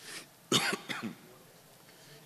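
A man clears his throat with a short cough into a desk microphone, about half a second in, followed by a smaller second one.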